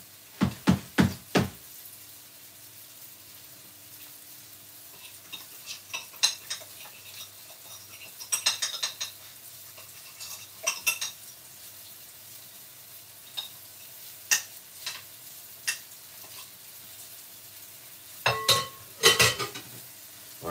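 Flour-coated salmon pieces frying in a little oil in a non-stick pan, a steady faint sizzle. Sharp clicks and clinks come scattered over it: four in quick succession at the start, a few small clusters in the middle and louder ones near the end.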